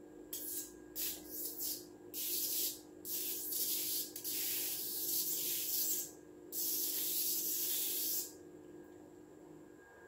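Sparks from a small Tesla coil's tin-can top load to a grounded screwdriver: bursts of high-pitched hissing sizzle that start and stop over and over, then cease about eight seconds in.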